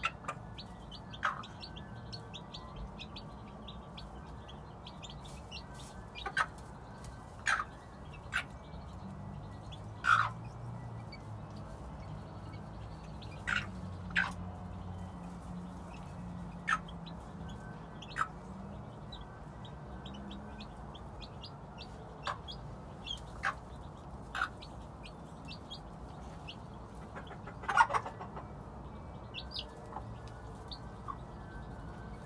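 Gamefowl hen and her chicks: short, scattered clucks and peeps over a low steady background, the loudest call near the end.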